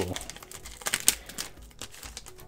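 The foil wrapper of a 1993-94 Topps basketball card pack crinkles as it is torn and pulled open by hand, with a few sharp crackles in the first second or so.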